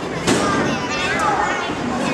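Excited children's voices in the audience, with a sharp knock about a quarter second in and a lighter one about a second in, from small combat robots clashing and bumping on the plywood arena floor.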